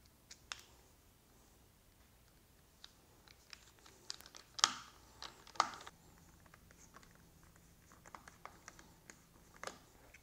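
Quiet, scattered clicks and taps of a hand screwdriver working small screws into a plastic motorcycle handguard and its mounting bracket, with two louder clicks about halfway through.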